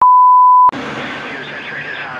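A loud, steady, high test-tone beep, held for under a second and cut off abruptly, laid over a TV-static transition. It is followed by a steady hiss with a faint, slowly falling tone.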